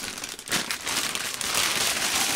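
Thin plastic bag crinkling as a wrapped sneaker is pulled out of its box. The crackle starts about half a second in and grows louder near the end.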